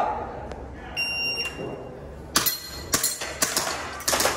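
An IPSC shot timer gives a steady electronic start beep about a second in, then an airsoft pistol fires four sharp shots, about half a second apart.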